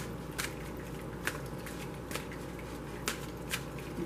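A deck of cards being shuffled by hand: a few short, soft card clicks spaced about a second apart.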